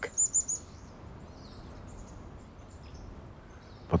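A small bird chirping: four quick, high chirps just after the start, then a few fainter calls, over a faint low background rumble.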